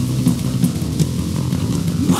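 Raw punk/hardcore band playing an instrumental stretch between vocal lines: distorted electric guitar and bass guitar over drums, loud and steady.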